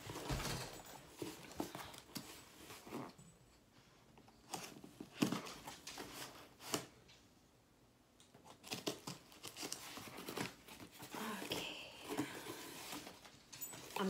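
Cardboard shipping box being opened by hand: scattered taps, scrapes and tearing of packing tape and cardboard, with short quiet gaps between.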